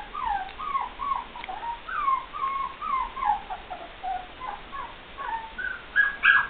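Poodle puppy whimpering: a steady run of short, high whines, each falling in pitch, about three a second.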